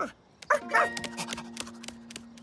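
A cartoon dog gives a short sliding yelp about half a second in. It is followed by a held tone with a few higher notes, and a run of light ticking paw steps as the dog trots off.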